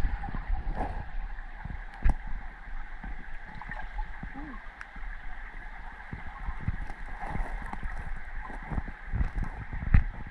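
Creek water heard through an underwater camera's housing: a muffled, steady rush and gurgle, with scattered small clicks and knocks. The sharpest knocks come about two seconds in and near the end.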